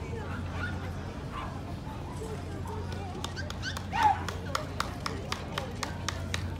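A dog barks once, sharply, about four seconds in, the loudest sound. From about three seconds in come quick, even footsteps of hard shoes on pavement, about three to four a second, over background chatter.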